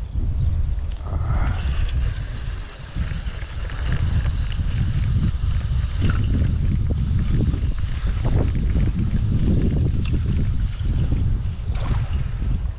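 Wind buffeting an outdoor microphone: a loud, gusting low rumble that rises and falls.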